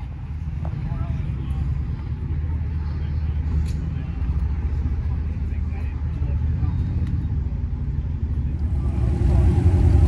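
Low, steady rumble of car engines idling, growing a little louder near the end, with faint voices in the background.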